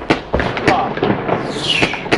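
New Year's Eve fireworks and firecrackers going off: a quick, irregular series of sharp bangs and cracks, with a high whistle falling in pitch near the end.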